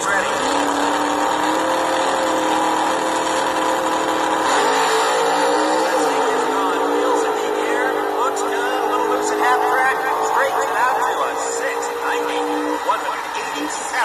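Recorded drag-race engine sound played by a vintage drag-racing toy: the funny car's engine revs up at the start and holds a steady high drone, its pitch wobbling about four to five seconds in, then cuts off near the end.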